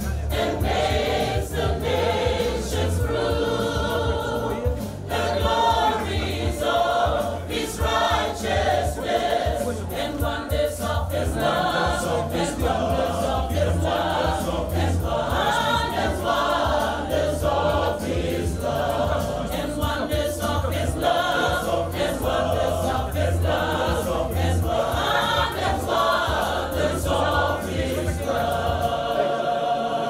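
A large choir singing together in continuous phrases. A low rumble runs underneath and stops just before the end.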